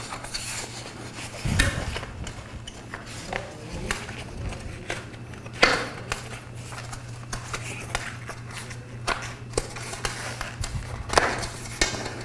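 A bicycle tyre being worked onto its rim by hand: the tyre bead rubbing and clicking against the rim, with a few sharper knocks, the loudest about a second and a half in, near six seconds and near the end. A steady low hum runs underneath.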